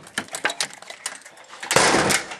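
Metal lever handles and latches of doors being worked by hand: a string of quick clicks, rattles and knocks, with a louder rush of noise near the end as a door is pushed open.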